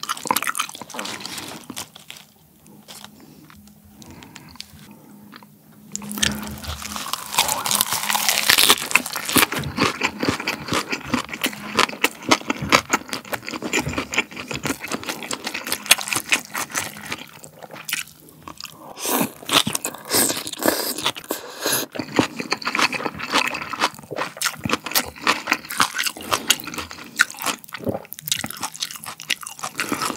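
Close-miked chewing and crunching of a lettuce wrap of pork trotter and raw fish, the fresh lettuce and vegetables crunching crisply. Softer for the first few seconds, then loud, dense crunching from about six seconds in.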